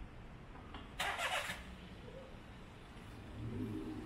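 Faint outdoor background sound. About a second in there is a short burst of hiss, and a low rumble rises near the end.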